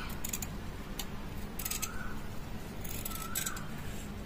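Scissors snipping through a small piece of printed cotton fabric, three short cuts spread over a few seconds.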